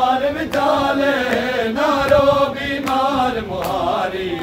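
Group of men chanting a noha, a Shia mourning lament, in unison, with sharp slaps of matam (hands striking chests) keeping a beat about every three-quarters of a second.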